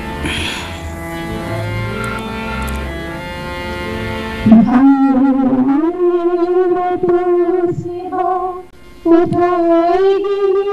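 Instrumental music with many held notes and a bass line, then about halfway through a woman starts singing a song into a microphone over thinner accompaniment, her voice with a wavering vibrato.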